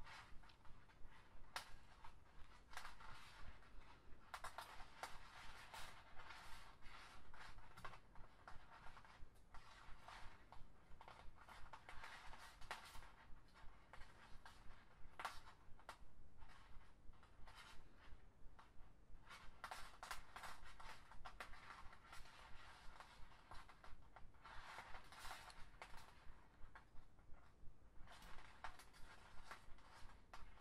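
Flat plastic lanyard strands rubbing and sliding against each other as they are woven and pulled tight into a stitch: soft scratchy stretches of a second or two, again and again, with small sharp clicks in between.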